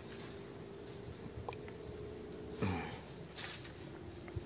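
Faint, steady chirping of insects such as crickets, with a brief voice about two and a half seconds in.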